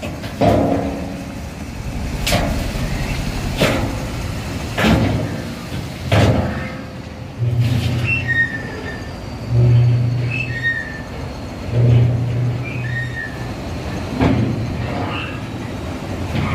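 Iron ore tumbling off a dump truck into a grizzly feeder pit: a continuous rumble of sliding ore with heavy knocks about every second and a quarter. From about halfway a low hum comes and goes roughly every two seconds.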